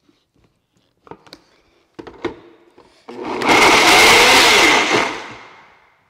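A few light knocks as the lid is pressed onto a countertop blender jar. About three seconds in, the blender starts, running loud with a steady whine as it purées strawberries, yogurt and crushed ice for about two seconds, then winds down near the end.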